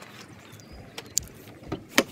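A few sharp clicks over a low rustle, the loudest and sharpest near the end: a car door being unlatched and opened.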